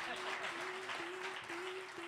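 Audience applauding at a moderate level, with a steady held tone underneath that drops out briefly about twice a second.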